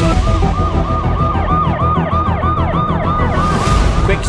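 Emergency vehicle siren in a fast yelp, its pitch sweeping up and down about four times a second, over a low musical beat.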